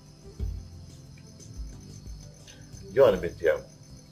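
Steady high-pitched chirring of crickets, under soft low thumps of background music. A short spoken word comes about three seconds in.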